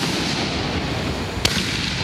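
Excalibur consumer artillery shells going off one after another: a sharp bang at the very start and another about a second and a half in, with rumbling echo between them.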